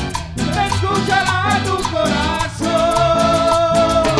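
Guaracha band playing live: a held melodic lead line of long notes over a steady beat and bass.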